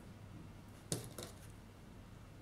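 Two small, sharp clicks about a second in, a fraction of a second apart, from fine jewellery pliers and a small metal bead being worked onto a cord.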